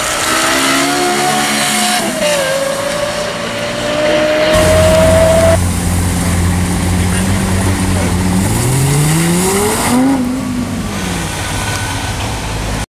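Lexus LFA's 4.8-litre V10 at high revs, its pitch climbing with a drop at a gearchange about two seconds in. After a cut, the engine runs low and steady, then revs up about eight and a half seconds in, peaking near ten seconds before falling away.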